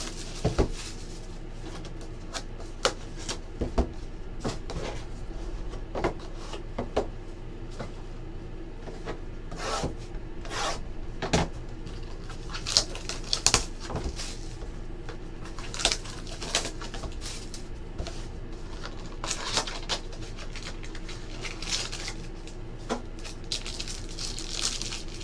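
Hands unwrapping and opening a sealed trading-card box: irregular clicks, taps and crinkles of cardboard and plastic shrink-wrap being handled, over a low steady hum.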